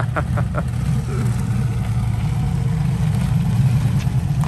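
Turbocharged 1835 cc air-cooled VW Beetle flat-four running at low speed as the Baja Bug drives up and pulls in close, a deep, steady engine rumble.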